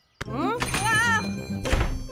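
Cartoon sound effects: a sudden thunk, then rising, wobbling sliding tones, and a heavy thump near the end.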